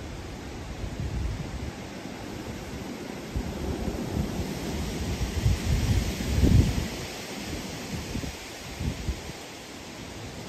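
Gusty wind blowing through bare trees, with gusts buffeting the microphone as a low rumble; the wind swells after the middle, and the strongest gust comes about six and a half seconds in before it eases.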